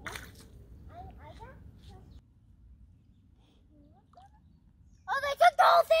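Mostly quiet: a faint low rumble and a few faint short calls in the first two seconds, then a person speaking during the last second.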